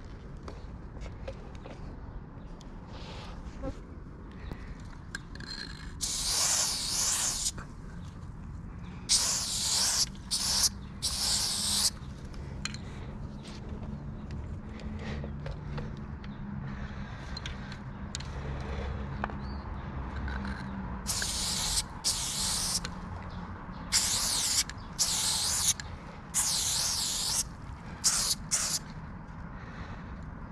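Aerosol spray paint can spraying in about ten short hissing bursts of a second or so each, painting letters on concrete. The bursts come in two groups, one around six to twelve seconds in and one from about twenty-one seconds on.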